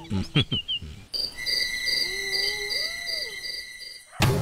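Night ambience of insects: a steady high cricket trill and a second insect chirping in regular pulses, two to three a second, starting about a second in. A short wavering animal call rises and falls in the middle. Before that, the first second holds the fading end of the previous scene's chirping sound effects and clicks.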